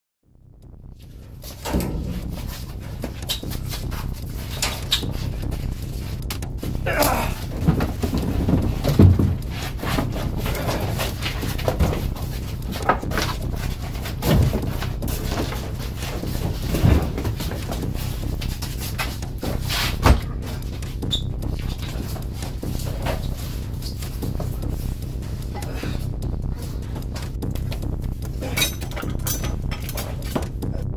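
A steady low drone runs throughout, under scattered knocks and the heavy breathing and grunting of a scuffle.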